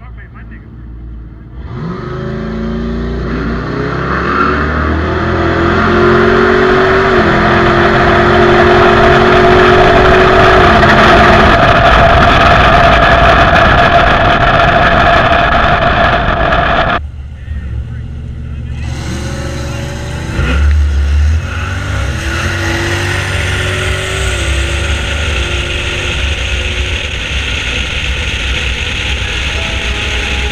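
A donk drag car's engine at full throttle, heard from a camera mounted on the car's body: its note climbs, drops back at each gear shift and climbs again, loudest about ten seconds in. It cuts off abruptly a little past halfway, and a second onboard pass follows with the engine again pulling up through the gears.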